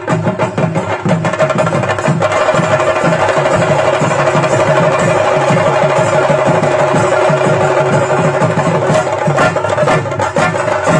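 Traditional Kerala temple percussion accompanying a Theyyam: chenda drums beaten in a loud, steady rhythm of repeated strokes, with a held tone joining about two seconds in.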